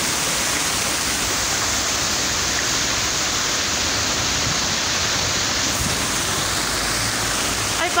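Park fountain running: many water jets spraying around a central rock and splashing into the pool below, a steady rush of falling water.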